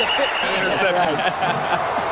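Football TV broadcast sound: voices over stadium crowd noise, with a steady high tone through about the first second.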